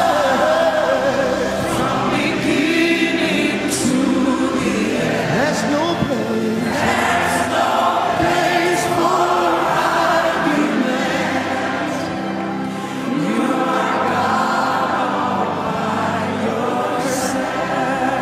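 Live gospel worship music: a lead vocalist and a choir and congregation singing a slow worship song together over steady instrumental accompaniment.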